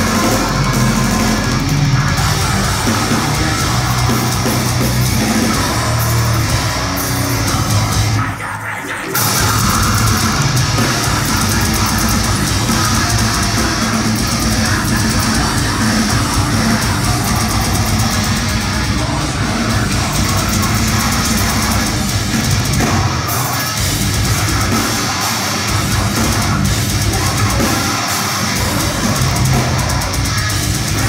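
Deathcore band playing live through a venue PA, heard from the crowd: heavily distorted guitars, bass and pounding drums. The band briefly cuts out about eight seconds in, then comes straight back in.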